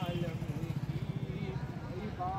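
A man's voice chanting a devotional Urdu verse (naat) with a bending melody, over a steady low rumble.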